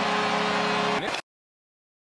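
Arena goal horn sounding a steady, deep chord over crowd noise after a home goal, cut off suddenly just over a second in.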